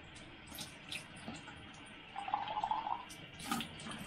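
Water running from a Tyent ACE-11 water ionizer's spout and splashing into a glass as it dispenses alkaline drinking water. The splashing grows louder and more gurgling about halfway through, with a couple of light clicks.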